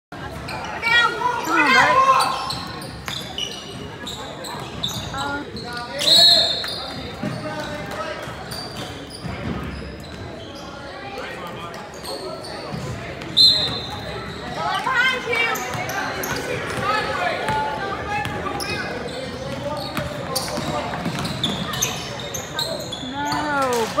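Sounds of a youth basketball game in an echoing gym: the ball bouncing on the hardwood floor and spectators' voices and shouts. Two short, sharp high-pitched sounds stand out, about six and thirteen seconds in.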